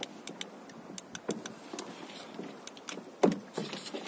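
Scattered light clicks and knocks of gear being handled on a small fishing boat, with a louder knock about three seconds in.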